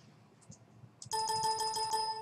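Windows volume-control feedback chime: a single electronic ding about a second in, ringing for about a second and fading away, preceded by a few faint clicks.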